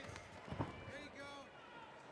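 Faint, distant shouting voices, with a single dull thud about half a second in.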